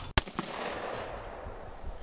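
A single shotgun shot at a skeet target, a sharp crack a fraction of a second in, followed by its report echoing and dying away over about a second.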